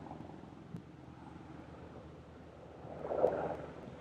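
Wind on an outdoor webcam microphone: a steady low rush, with a small click under a second in and a louder gust swelling about three seconds in.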